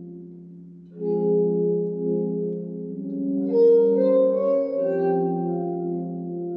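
Cristal Baschet played by stroking its glass rods with wet fingers, with the tones amplified through its metal cones. It gives long, sustained, overlapping tones like a glass harmonica: a chord dies away, a new chord swells in about a second in, and higher notes join around three and a half seconds in.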